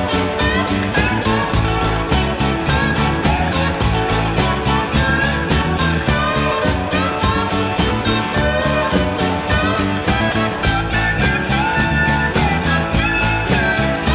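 Instrumental break of a rock song: electric guitar lead lines with bending, gliding notes over bass and drums keeping a steady beat.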